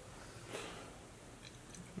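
A person faintly chewing a mouthful of burrito, with a slightly louder chew about half a second in.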